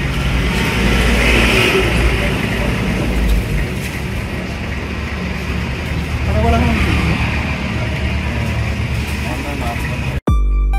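Indistinct voices of several people in a small grocery shop over a steady low rumble.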